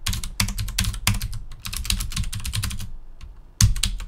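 Typing on a computer keyboard: a run of quick, irregular keystrokes, a brief pause, then a louder key press near the end.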